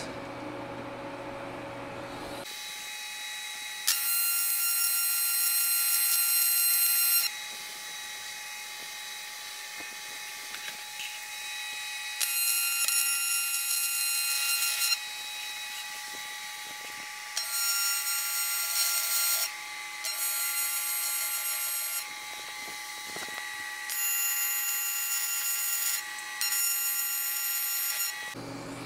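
AC TIG welding arc on dirty cast aluminium, a high-pitched buzzing whine with the AC frequency set high. It starts a couple of seconds in and swells louder in six stretches of two to three seconds each. The arc is welding dirty because the cast metal is dirty.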